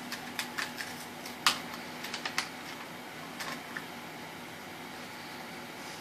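Scattered light clicks and snaps from a small Hot Wheels toy car being handled, most of them in the first four seconds and the loudest about a second and a half in, over a faint steady hum.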